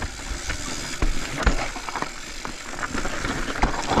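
Commencal full-suspension mountain bike riding down a dirt and rock trail: tyres running over the ground, with many short knocks and rattles from the bike as it goes over bumps.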